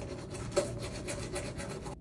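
Manual toothbrush scrubbing teeth in rapid, even back-and-forth strokes.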